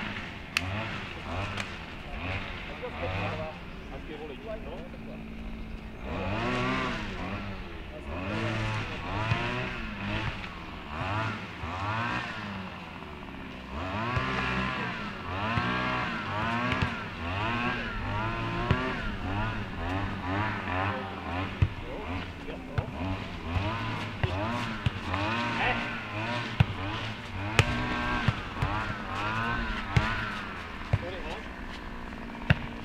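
A motor engine revving up and falling back again and again, over a pulsing low hum, with scattered sharp knocks in the second half.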